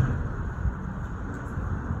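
Steady low rumble of outdoor urban background noise: distant traffic.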